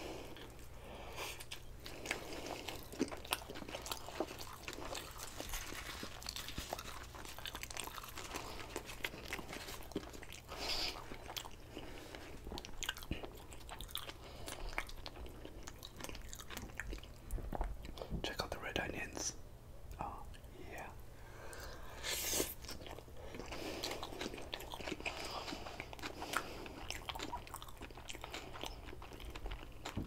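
Close-miked chewing of a sushi burrito (rice, nori, raw fish and lettuce), with wet mouth sounds and scattered sharp clicks throughout.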